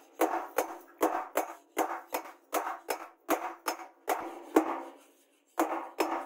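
Hammer blows on a red-hot steel blade resting on a round steel post anvil: a steady run of sharp metallic strikes, about two or three a second, each with a short ring. There is a brief pause near the end before the blows resume.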